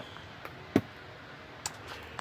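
Quiet steady background with two brief soft clicks, one about three-quarters of a second in and a fainter one near the end.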